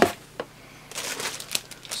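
Packaging rustling as a foam sheet and paperwork are lifted out of a cardboard box, with a couple of light clicks and a denser rustle in the second half.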